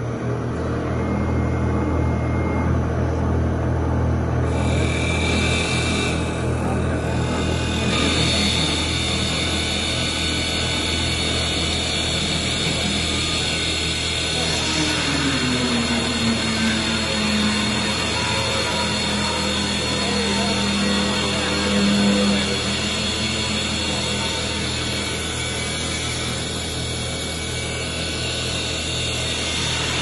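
Double-axis CNC wood lathe running as two cutters turn wooden baseball bat blanks: a low motor hum comes in at the start, the cutting noise thickens about eight seconds in, and a tone drops in pitch about fifteen seconds in, then holds steady.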